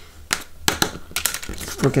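A quick series of sharp clicks and taps as a plastic spoon and a sheet of paper dusted with gold embossing powder are handled on a tabletop.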